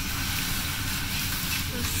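Fried rice sizzling in Kobe beef fat on a hot teppanyaki griddle, a steady hiss.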